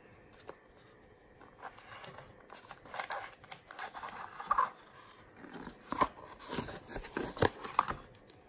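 Cardboard box being handled and opened by hand: irregular scraping and crackling of the flaps with several sharp clicks. A plastic-wrapped pan is handled in it near the end.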